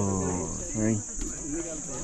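A steady, high-pitched insect chorus, unbroken throughout, under a voice speaking Nepali.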